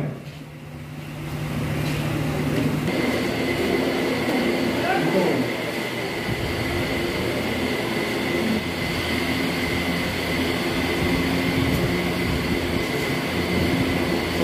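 Steady whir of electric fans running, with a low hum in the first few seconds that gives way to a broader, even whir; faint voices in the background.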